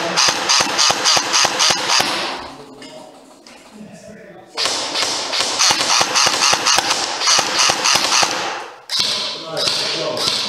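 Airsoft gun firing rapid repeated shots, about four a second, in two strings: the first stops about two and a half seconds in, and the second starts about two seconds later and stops shortly before the end.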